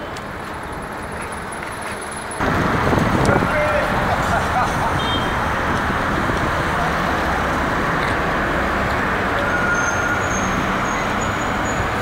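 City street traffic noise: a steady rush of passing cars, which jumps sharply louder about two and a half seconds in and stays up.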